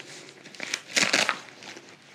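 A fabric toiletry bag being handled and opened, its material rustling in a short run of bursts loudest about a second in.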